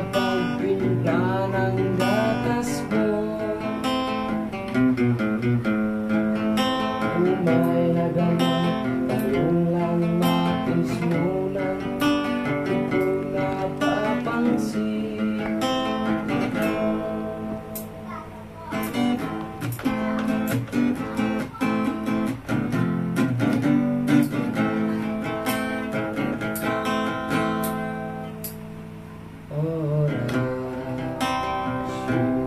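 Acoustic guitar played solo, strummed chords mixed with picked runs of notes. It goes quieter briefly a little past halfway and again near the end.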